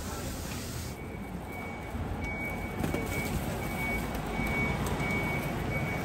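A vehicle warning beeper sounding a run of short high beeps, starting about a second in, over the low steady rumble of bus engines running in the terminal's bus bay.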